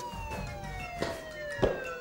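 A siren tone winding down, one long slow fall in pitch, with a couple of faint clicks about a second in and just past a second and a half.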